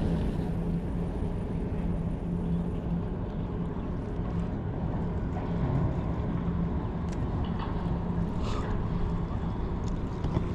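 Steady low engine drone with a constant hum, from a boat's or ship's engine running in the harbour, over a rumble of wind on the microphone.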